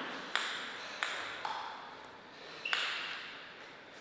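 A table tennis ball bouncing: four sharp, irregularly spaced pings, each with a short ringing echo in the hall.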